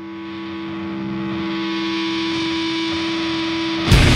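A single distorted guitar note held as a feedback drone, swelling up in volume and holding steady with strong overtones. Just before the end the full band crashes in with heavy distorted guitars and drums, much louder.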